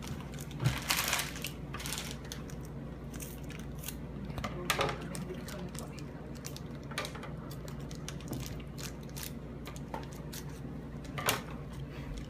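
Child's scissors snipping and a plastic-foil blind-bag wrapper crinkling as it is cut and pulled open by hand: scattered small clicks and rustles, with a few louder sharp snaps, over a steady low hum.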